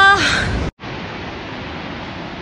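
A drawn-out call from a person's voice ends right at the start. After a brief break, there is the steady rushing of a large waterfall.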